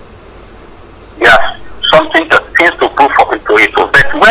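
Speech only: after about a second of pause, a phone-in caller's male voice talks rapidly.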